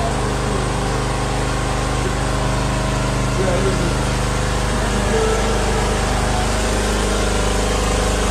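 A steady engine hum, even and unbroken, with faint voices murmuring underneath.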